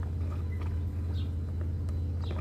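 A steady low machine hum, with a few faint, short, high chirps over it.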